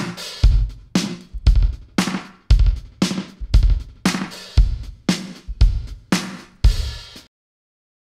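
Drum-kit groove of alternating kick and snare, about two hits a second, played through a gated 80s-style digital reverb with a long pre-delay and high cut, the tails cut short by a strong gate; the reverb's impulse response is switched from one gated setting to another as it plays. The beat stops abruptly about seven seconds in.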